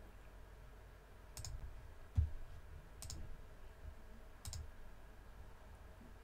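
Faint computer mouse clicks: three sharp clicks about a second and a half apart, with a soft low thump on the desk between the first two.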